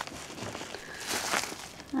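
Clear plastic bag crinkling as it is picked up and handled, with a cluster of sharper crackles a little past the middle.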